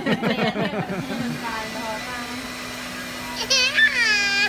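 Electric hair clippers running with a steady hum. Near the end a toddler starts to cry.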